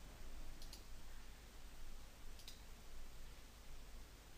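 Faint computer mouse clicks over low hiss: a quick pair of clicks just over half a second in and another single click about two and a half seconds in.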